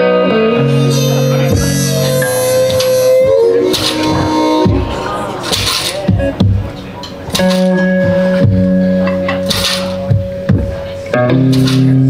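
Solo blues on an electric guitar with a rack-held harmonica: long held harmonica notes over plucked guitar, the opening of a song.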